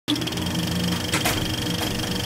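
Short intro sound over a channel logo: a dense, steady buzz with held tones that cuts off suddenly.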